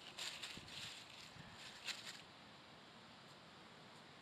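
Dry fallen leaves crackling as a hand rustles through them, in a few short crisp bursts over the first two seconds. The rest is faint steady hiss.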